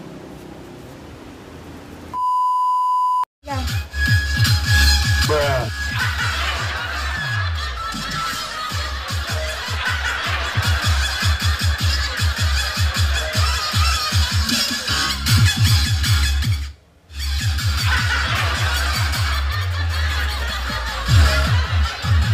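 A short steady beep about two seconds in, then loud electronic dance music with a fast, heavy thumping bass beat, briefly cutting out once near the end.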